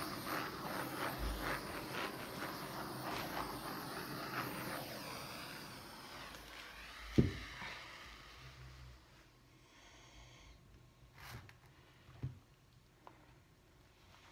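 Handheld gas torch hissing as its flame is swept over wet art resin on a canvas to pop surface bubbles, fading out after about six seconds. About seven seconds in comes one sharp knock, the torch being stood on the table, then a few quieter knocks as the canvas is handled.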